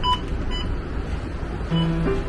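Two short electronic beeps at a public bus's exit door in the first half second, over the low rumble of the bus. Guitar music comes in near the end.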